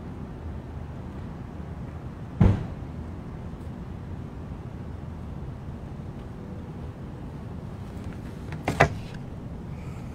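Steady outdoor background noise by a street and parking lot, broken by two loud thumps: a single heavy one a little over two seconds in, and a clattering knock near the end.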